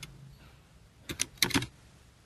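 Computer keyboard typing: a quick run of about five keystrokes about a second in, with quiet before it.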